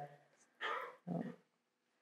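A pause in a spoken talk: near silence broken by two faint, short sounds about half a second apart, soft non-speech noises from the speaker at the lectern microphone.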